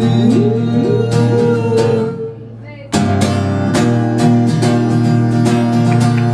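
Acoustic guitar played live: picked notes with sliding, rising pitch for the first two seconds, a brief drop in sound, then strummed chords resuming about three seconds in.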